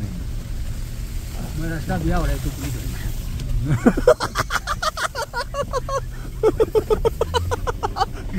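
Car running, heard from inside the cabin as a steady low rumble, with people's voices over it from about four seconds in.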